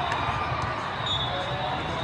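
Busy volleyball-hall din: many voices from spectators and players across the courts, with a few sharp thuds of volleyballs bouncing on the hard sport-court floor early on and a brief shoe squeak about a second in.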